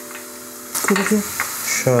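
Thin potato slices deep-frying in hot oil, a faint steady sizzle under people talking. A steady low hum fades out about half a second in.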